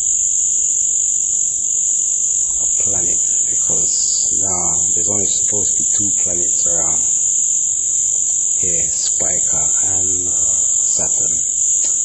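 Indistinct speech: a voice murmuring in short phrases for a few seconds, pausing, then murmuring again. It sits under a steady high-pitched hiss that runs throughout.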